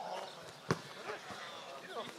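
Faint voices of players calling across an outdoor football pitch, with one sharp thud of a football being kicked about two-thirds of a second in.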